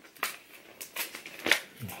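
Cardboard advent calendar doors being pried open and torn off: a scatter of short, sharp crackles and clicks of card and paper being handled.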